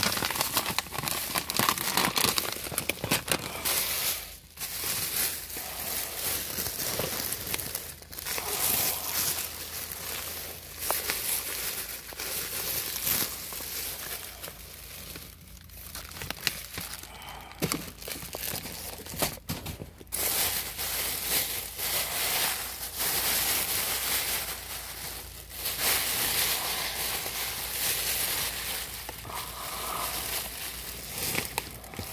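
Thin plastic shopping bags crinkling and rustling as hands dig through them and pull items out. The crinkling comes in long runs broken by a few brief pauses.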